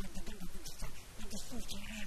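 Speech: an elderly man talking into a handheld microphone, with no other sound standing out.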